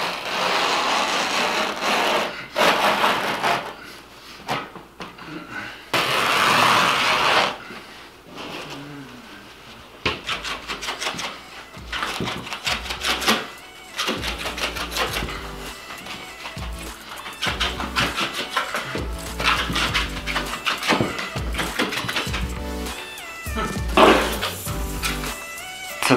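Background music with a steady beat, with two bursts of hissing noise in the first several seconds.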